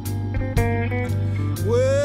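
Slow blues song: guitar notes over a steady bass line, with a note sliding up into a long held tone near the end.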